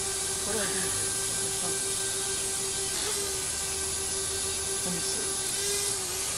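Small quadcopter drone hovering, its propellers giving a steady buzzing hum with faint murmured voices under it.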